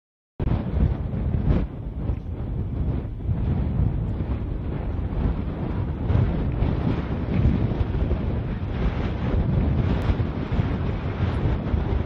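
Wind buffeting an outdoor microphone: a steady low rumbling noise.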